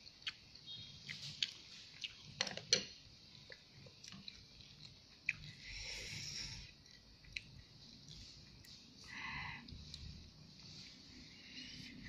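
Faint eating sounds: noodles slurped and chewed, with scattered small clicks of chopsticks against the bowl.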